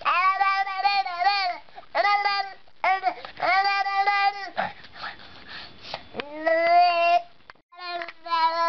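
A baby vocalizing in four long, steady-pitched, sing-song 'aah' sounds with short breaks between them, while a plastic toy is held in its mouth.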